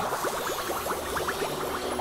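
Outro sound effect: a dense run of short, quick rising chirps over a steady hiss, like bubbling water.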